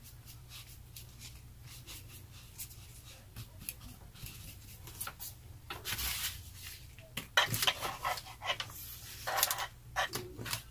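Hands rubbing and handling a paper cut-out on a craft table: soft intermittent scrapes and rustles that grow into louder rubbing bursts about six, seven and a half and nine and a half seconds in, over a low steady hum.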